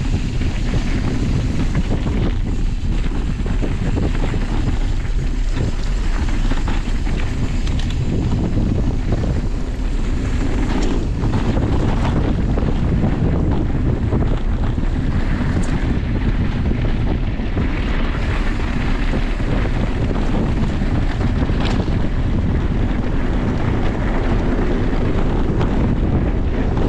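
Wind buffeting an action camera's microphone on a mountain bike riding downhill, with the bike's tyres rolling over dirt and gravel and a few light knocks and rattles.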